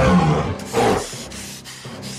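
A sudden loud roar-like sound effect in two swells, the second just under a second in, settling into softer scattered noise, with music underneath.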